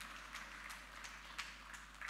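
A few faint, scattered claps from the congregation, irregular sharp sounds spread through the pause, over a steady low hum.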